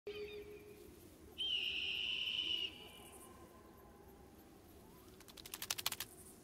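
Cartoon sound effects over faint desert ambience: a high, steady whistle-like call for just over a second, starting about a second and a half in, then a quickening patter of sharp clicks near the end.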